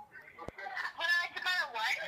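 A high-pitched, unworded voice sound, rising and falling, starting about a second in, after a single sharp click about half a second in.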